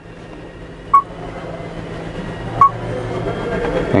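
Two short, high electronic beeps from a G-SCAN2 scan tool as its touchscreen is tapped, about a second and a half apart, over a low background hum that slowly grows louder.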